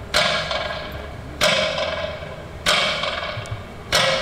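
Slow metronome beats over loudspeakers marking a minute of silence: four strokes about 1.3 seconds apart, each ringing out in a long echo.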